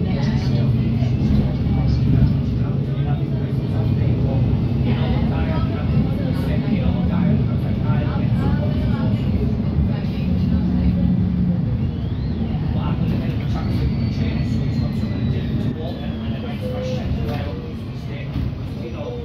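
Alexander Dennis Enviro200 MMC single-deck bus heard from inside the saloon while moving: a steady low diesel engine drone with road noise. It gets a little quieter about 16 seconds in as the bus slows.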